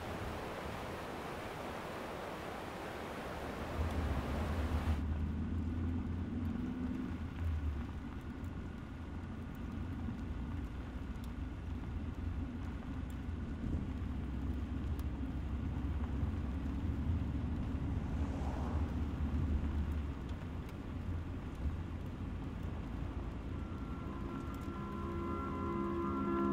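Steady rushing of a fast river for the first few seconds. Then, about five seconds in, the sound changes abruptly to a low, steady vehicle rumble, as of a car driving through a road tunnel.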